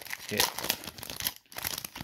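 The wrapper of a 2022 Topps Series 2 baseball card pack crinkling and tearing as it is ripped open by hand, in quick, irregular crackles.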